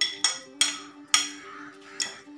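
A steel spoon striking the rim of a ceramic plate four times in just over a second, each strike a sharp clink with a brief ring, knocking the last food off the plate. Faint background music underneath.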